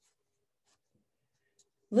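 Near silence, with a woman's voice starting to speak near the end.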